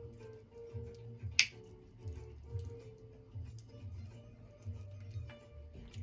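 Soft guitar music playing in the background, with a single sharp clink about a second and a half in as a metal spoon knocks the bowl while stirring peanut butter and yogurt together.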